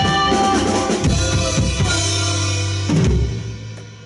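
A live rock band finishing a song: after a held note, the drum kit plays a run of kick and snare hits over sustained bass and guitar notes, ending in a last loud hit about three seconds in that rings and dies away.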